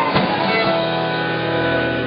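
A live band of acoustic guitar, bass, electric guitar, fiddle and drums plays the closing chord of a song. A few drum hits land in the first second, then the chord is held and rings on steadily.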